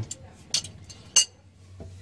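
Two light metallic clinks, the second with a brief high ring, as small metal parts are handled.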